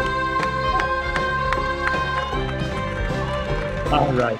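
Upbeat children's song from a stage musical, with a steady beat and a long held note. It cuts off at the end.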